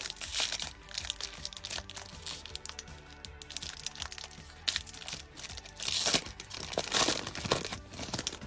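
Foil wrapper of a 1991 Pro Set PGA Tour card pack being torn and peeled open by hand, crinkling in irregular crackles, with the loudest bursts about six and seven seconds in.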